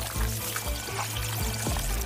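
Anime soundtrack: a steady low musical drone under soft watery sound effects with a few light clicks, scoring a swarm of small rolling eyeballs.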